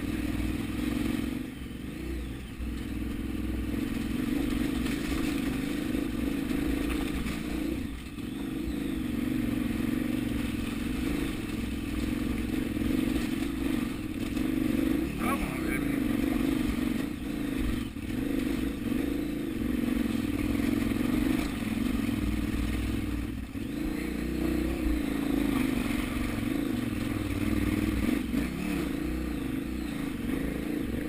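KTM 990 Adventure's V-twin engine running at low revs, its note wavering up and down with the throttle as the motorcycle works slowly up a steep, rocky trail.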